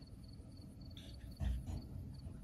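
A cricket chirping steadily, a short high chirp repeating about four times a second. About a second and a half in there is a louder low thud with a rustle.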